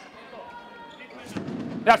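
Floorball arena sound during live play: crowd and player voices with a few sharp clicks from sticks and ball. The crowd noise swells near the end as an attack closes on goal.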